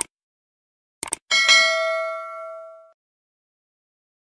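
Subscribe-button animation sound effect: a click at the start and a quick double click about a second in, then a single bright bell ding that rings out and fades over about a second and a half.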